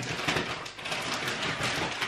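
Plastic food packaging crinkling and rustling as it is handled, a dense run of small crackles.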